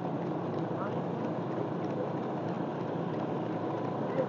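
Steady low hum of a vehicle engine running at an even, slow pace, mixed with wind and road noise.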